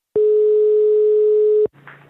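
Telephone ringback tone heard over the phone line: one steady beep about a second and a half long that cuts off sharply, leaving faint line hiss and a low hum as the call connects.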